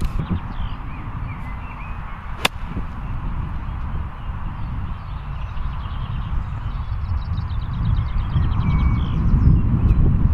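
A golf wedge striking a ball out of damp rough: one sharp click about two and a half seconds in. A steady low rumble of wind on the microphone runs underneath.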